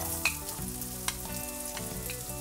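Chopped onion hitting hot oil with cumin seeds and ginger in a frying pan, sizzling steadily. A wooden spatula taps a few times as it scrapes the onion off the plate into the pan.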